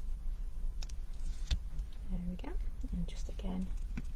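A woman murmuring quietly, half-whispered, from about halfway through, over a steady low hum. There is a sharp tap about a second and a half in.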